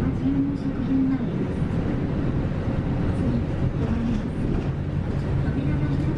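Inside a moving city bus: steady engine and road rumble, with a low engine tone holding steady near the end.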